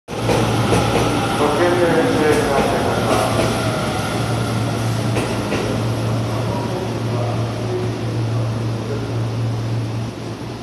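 Electric commuter train running past on the neighbouring platform track, loudest at first and slowly easing as it clears. A steady low hum runs underneath throughout.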